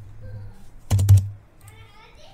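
Computer keyboard keystrokes: a quick cluster of two or three thumping key presses about a second in.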